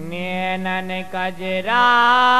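A man singing a long, drawn-out note in Bundeli Diwari folk style. He holds a steady pitch with short breaks, then steps up higher and louder near the end.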